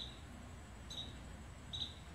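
Small bird chirping faintly in the background: short, high chirps about once a second.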